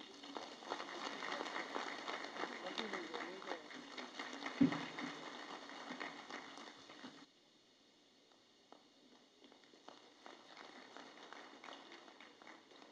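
Faint hall ambience: a low murmur of voices with scattered small clicks and knocks, and one louder thump a little before the midpoint. A bit past halfway the background cuts off abruptly, leaving only faint scattered clicks.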